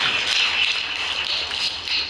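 Audience applause: a steady, dense patter of many hands clapping, easing off a little near the end.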